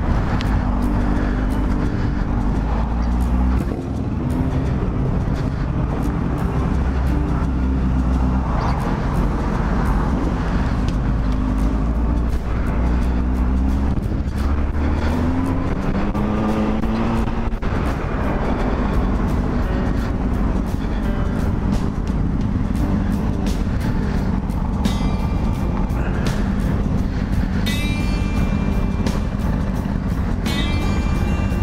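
Honda Hornet motorcycle's inline-four engine running and revving up and down through the gears, with background music laid over it.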